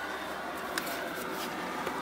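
Quiet steady hum of a small room, with a couple of faint light clicks as the kitchen tap is handled; no water runs from the tap because the water is frozen.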